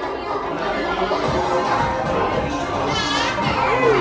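Many people chattering at once around dinner tables, with children's voices among them and music playing underneath. One high voice rises and falls about three seconds in.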